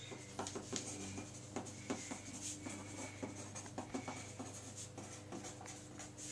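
A pen writing by hand, a run of short, irregular scratchy strokes, over a faint steady low hum.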